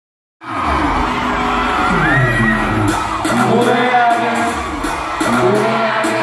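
Live concert sound heard from within the audience: loud music over the arena sound system with a steady deep bass, and the crowd screaming and cheering over it in high gliding cries. It cuts in suddenly less than half a second in.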